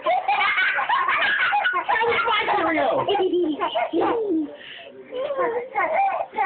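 Baby about nine months old babbling and cooing in a run of high, sliding vocal sounds, with a short break about four and a half seconds in.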